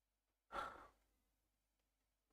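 A man's short sigh, a single breath out near the microphone about half a second in; otherwise near silence.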